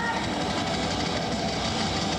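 Thrash metal band playing live in an arena: distorted electric guitars, bass and drums in a dense, steady wall of sound, with a rising guitar bend right at the start.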